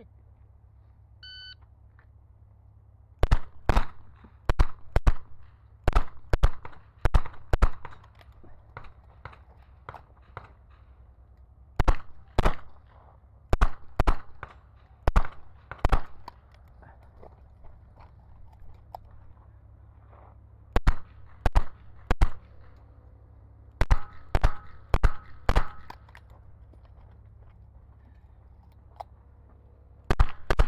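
A shot timer beeps once about a second and a half in, then a revolver fires in quick strings of shots with pauses of a few seconds between the strings, as the stage is shot.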